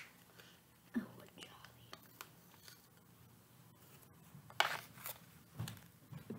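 Quiet handling of a face-mask packet: faint rustles and clicks, then a brief louder crinkle of the wrapper a little after four and a half seconds. A soft murmur comes about a second in.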